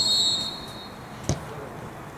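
Referee's whistle, one long high blast that stops about a second in, signalling the penalty kick to be taken. About a third of a second later comes a single sharp thud as the football is struck.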